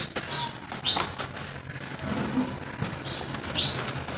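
Soft mud-coated chunks being squeezed and crumbled by hand, with wet squelching and crumbly crackle as pieces and powder fall into a tub. There are several short crisp bursts of crumbling: near the start, about a second in, and near the end.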